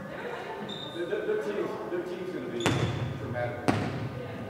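A volleyball striking twice, about a second apart, each sharp smack echoing around a large gymnasium over the players' distant chatter.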